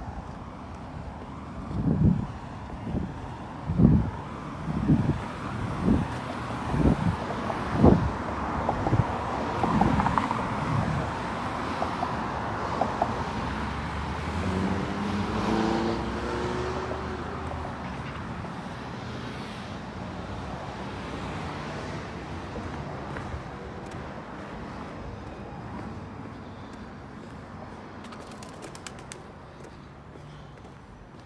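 Road traffic noise, with a car passing about halfway through, rising and then fading. Through the first several seconds there are low thumps about once a second.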